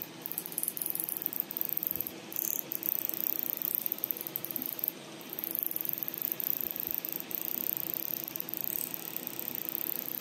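Halo hybrid fractional laser handpiece firing as it is glided under the eye: a steady high hiss with a fast flutter over a faint machine hum, cut by brief pauses a few times.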